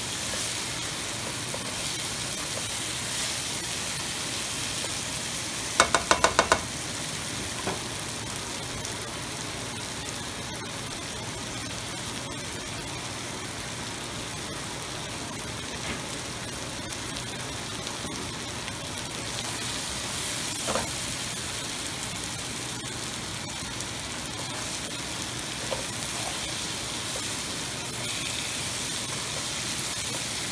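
Marinated chicken pieces and onions sizzling steadily in oil in a nonstick wok, with occasional stirring. About six seconds in, a quick run of about five sharp, ringing taps stands out above the sizzle, with a few faint single ticks later on.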